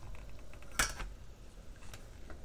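A single sharp click about a second in, from the glass steamer dish of stuffed mushrooms being handled as it is set in place, with a fainter tap near the end.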